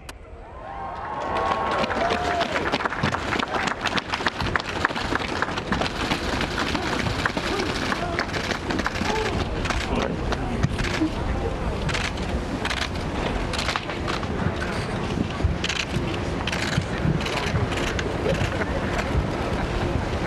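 Outdoor ambience: wind rumbling on the microphones under a murmur of voices, fading in over the first second or two. Runs of sharp camera-shutter clicks come between about ten and seventeen seconds in.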